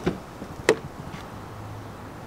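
Car rear door handle pulled and the door latch releasing with one sharp click about two-thirds of a second in, followed by a faint low hum as the door opens.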